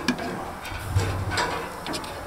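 Metal tongs clicking lightly against a gas grill's grate as shrimp skewers are turned, a few separate clicks over a steady hiss.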